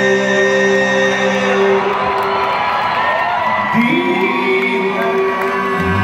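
A live band's held final chord fades about two seconds in, giving way to a large crowd cheering and whooping. New sustained music swells in from about four seconds, with a deep bass note entering near the end.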